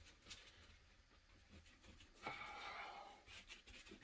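Near silence, with a faint scratchy brushing of a glue brush spread across leather, heard for about a second just past the middle.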